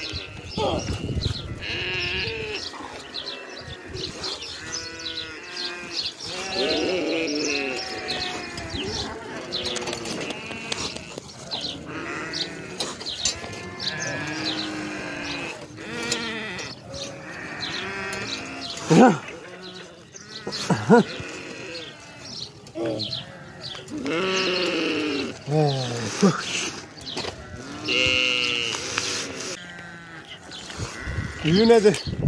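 A flock of sheep bleating, many calls overlapping one after another, with two louder calls about two-thirds of the way through.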